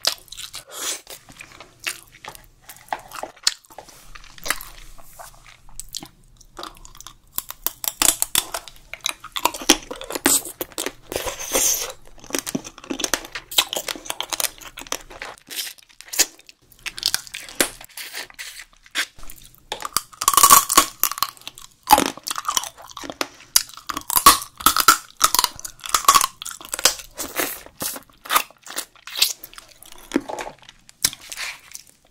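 Close-miked wet chewing, crunching and biting of soy-sauce-marinated raw crab, with many small cracks and clicks as the shell and legs are bitten and sucked.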